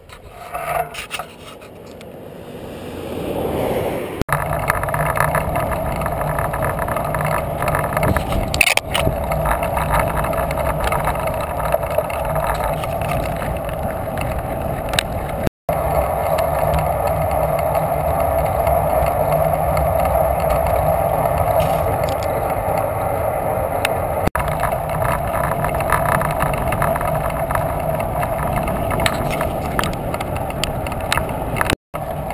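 Wind rushing over a bicycle-mounted camera's microphone, with tyre noise on the asphalt. It builds over the first few seconds as the bike gets moving, then holds steady.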